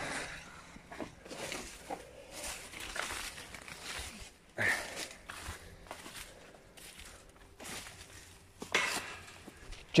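Footsteps scuffing through leaf litter and undergrowth, with irregular rustling of clothing and plants against the phone's microphone and a couple of louder scrapes.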